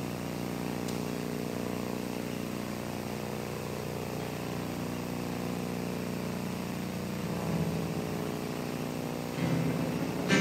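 A steady low drone runs under the room. An acoustic guitar starts strumming near the end.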